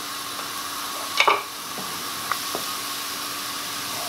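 Chopped onions frying in hot oil in a nonstick pan, a steady sizzle, with a sharp tap about a second in and two faint ticks later.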